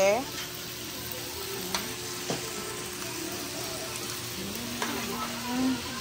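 Meat sizzling on a grill pan over a portable gas stove: a steady frying hiss, with a couple of faint clicks.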